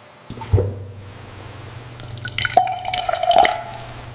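Liquid dripping and splashing over a steady low hum, with a dull knock about half a second in and a run of drips and a short ringing tone in the second half.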